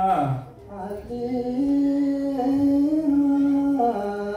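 Ethiopian Orthodox liturgical chant: a voice holding long sustained notes that step in pitch, with a brief break about half a second in before one long held phrase.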